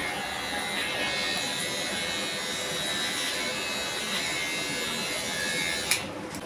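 Electric hair clippers buzzing steadily while cutting hair, stopping with a click near the end.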